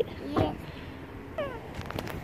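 A young child's brief high-pitched vocal squeak, falling steeply in pitch, about one and a half seconds in.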